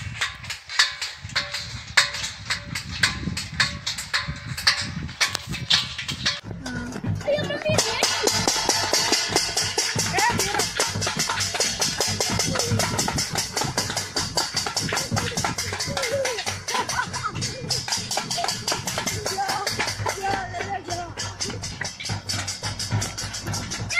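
Metal thali plates being beaten rapidly and continuously to drive off a locust swarm, getting denser and louder about a third of the way in, with voices shouting over the clatter.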